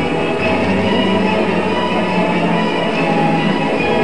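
Instrumental floor-exercise music playing over the arena's sound system, with sustained notes.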